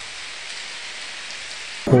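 A large crowd clapping in an even, steady patter of many hands, cut off abruptly near the end by a man starting to speak.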